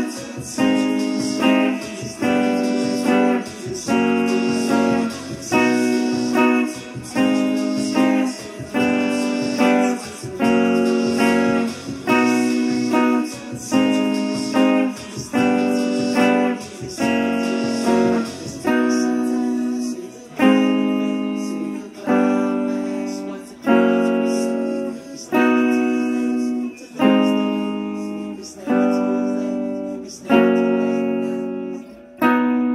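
Electric guitar strumming a repeating chord pattern, a chord about every 0.8 s. A little past halfway the chords become longer and louder, about one every 1.6 s.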